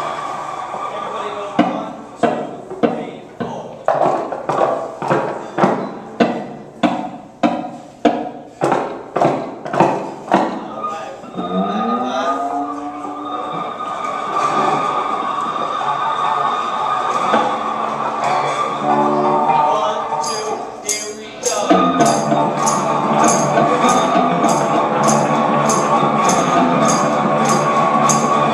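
A group of homemade electric cigar box guitars played with slides. Chords are struck about twice a second for the first ten seconds, then a slide glides upward and notes are held. From about 22 s everyone plays together louder, over a steady high tapping beat.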